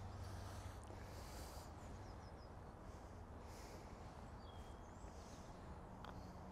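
Very quiet outdoor ambience: a faint steady low rumble with a few faint, short, high bird chirps.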